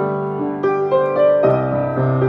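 Piano playing a slow melody of single notes over held bass notes, the bass moving to a new, lower note about one and a half seconds in.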